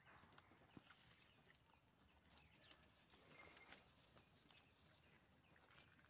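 Near silence: a faint outdoor background with scattered small clicks and a few faint, short, high chirps.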